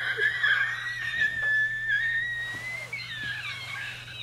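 A man laughing: a long, high, wavering squeal of laughter with little breath between, breaking up into shorter squeaks near the end.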